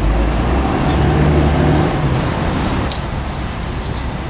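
A passing motor vehicle on the road: a low engine rumble with a steady hum, strongest for the first two and a half seconds, then easing into general traffic noise.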